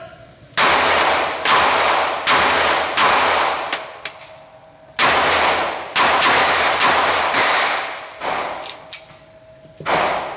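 .380 ACP pistol firing Dutch-loaded hollow points, alternating 88-grain HTP and 90-grain XTP: eight shots in two strings of four, about a second apart, with a pause of about two seconds between the strings. Each shot echoes in the indoor range, and the pistol cycles every round without a malfunction.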